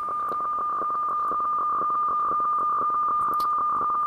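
HF radio weather fax signal coming out of the receiver's audio: a steady high tone with a fast, faint rasping texture underneath.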